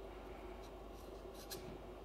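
Faint rubbing and rustling as a flexi rod is unwound and pulled out of curled locs, with a small click about one and a half seconds in, over a low steady hum.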